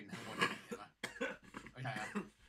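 A man's short, breathy vocal bursts without words, strongest about half a second in, then softer throaty sounds.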